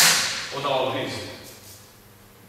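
A single sharp, loud smack, its ring fading over about half a second, followed by a brief wordless vocal sound from a man.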